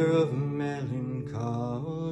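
A man singing a drawn-out, wordless melody in several short phrases over acoustic guitar notes left ringing underneath.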